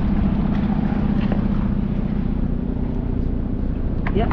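A steady low mechanical drone, like a motor or machinery running nearby, holding an even level throughout.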